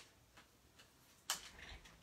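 A few faint ticks, then one sharp click about a second in, as a paper trimmer is picked up and handled on the work table.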